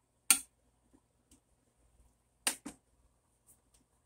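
Metal spatula knocking on a metal baking sheet while grilled eggplant is pressed flat: one sharp clack about a third of a second in, then two more close together about two and a half seconds in.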